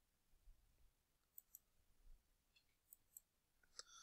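Near silence: room tone with a few faint, brief clicks, the clearest near the end.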